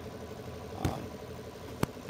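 A car engine idling steadily, with a short knock about a second in and a sharp click near the end.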